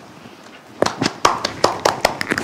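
Two people clapping their hands, starting about a second in as a quick, uneven patter of claps.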